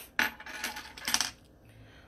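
A silver chain bracelet with turquoise stones jingling and clinking as it is handled on the wrist: a quick run of light metallic clinks over the first second and a half.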